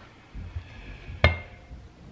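A motorcycle rear brake backing plate with its brake shoes fitted, set down on a workbench: a couple of soft handling bumps, then one sharp metallic clink with a brief ring about a second and a quarter in.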